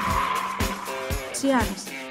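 Advertising jingle with a steady drum beat and a sung line, overlaid in its first second by a car sound effect, a rushing hiss like a passing car or tyre screech.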